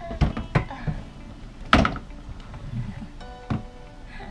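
A handful of knocks and bumps, the loudest about two seconds in, as a guillotine paper cutter is pulled out from under a bed across a tiled floor.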